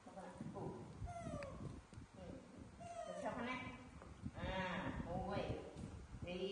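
Young macaques giving several short, high-pitched squeals that glide up and down, mixed with a woman talking.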